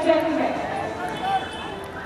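A person's voice speaking indistinctly, with no clear words.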